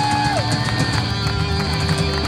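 Live rock band playing: electric guitars and a drum kit with cymbal strokes. A long held high note slides down and stops about a third of a second in.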